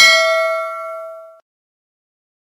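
Notification-bell chime sound effect: a single bright ding of several ringing tones that fades and then cuts off suddenly about one and a half seconds in.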